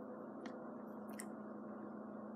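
Two small clicks of plastic Mega Construx dragon-figure parts being handled and fitted together, over a steady low hum.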